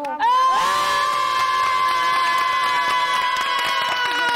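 A group of women holding one long, high-pitched shout together, the drawn-out 'au!' at the end of a chanted cheer. It rises at the start and then stays steady and loud.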